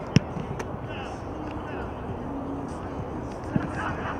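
A football kicked: one sharp, loud thump of a foot striking the ball a fraction of a second in, with a fainter knock later.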